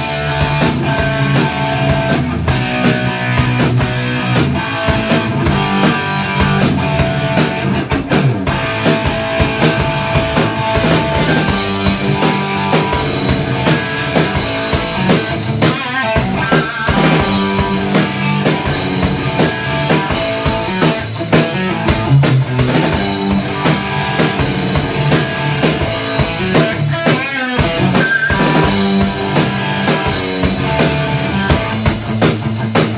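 Two-piece rock band playing live: guitar and a full drum kit, an instrumental passage with no singing. The top end gets brighter and splashier about eleven seconds in.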